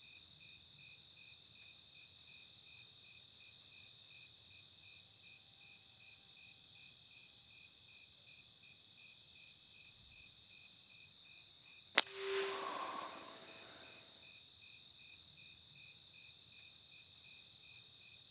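Crickets chirping in a steady, fast pulsing rhythm throughout. About two-thirds of the way through comes a single sharp crack of an air rifle shot at a rat, followed by a brief, softer noise.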